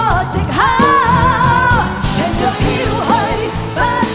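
Live Cantonese pop ballad: a woman singing into a handheld microphone, holding one long note with vibrato about a second in, backed by the band.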